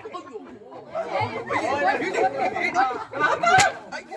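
Voices of actors speaking and calling out on stage, with one sharp crack a little over three and a half seconds in.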